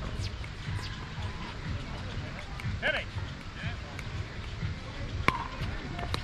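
Low outdoor court hum with faint distant voices, and about five seconds in a single sharp click of a plastic pickleball bouncing on the hard court.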